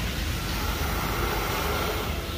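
Milking plant machinery in a dairy shed running during milking: a steady, even mechanical hum and hiss with no breaks.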